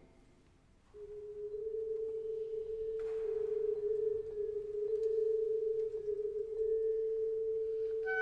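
After about a second of near silence, the strings enter on a single soft held note, almost pure in tone. It steps up slightly in pitch shortly after it starts and is then held steady.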